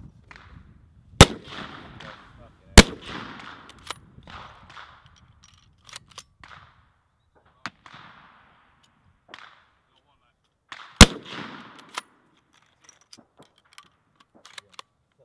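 Three loud centrefire rifle shots, the first two about a second and a half apart and the third about eight seconds later, each followed by a short tail of echo, with fainter pops and clicks between them.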